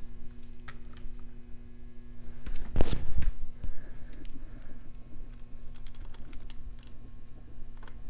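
Small clicks and taps of hands working small metal parts in a motorcycle's carburetor area, with one louder knock about three seconds in, over a steady low hum.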